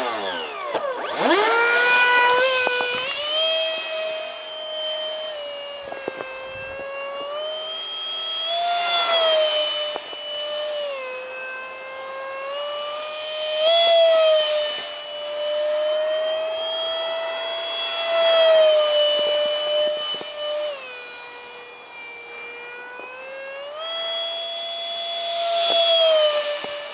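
70mm electric ducted fan of a foam RC jet whining in flight. It spools up about a second in, then rises and falls in pitch with the throttle and grows louder several times as the jet passes close.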